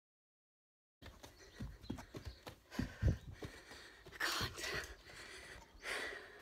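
Bare feet thudding on carpeted stairs during a stair-climbing exercise, starting about a second in, followed by hard, out-of-breath breathing from the exertion.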